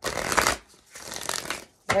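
A deck of oracle cards being shuffled in the hands: two bursts of riffling card noise, the first short, the second nearly a second long.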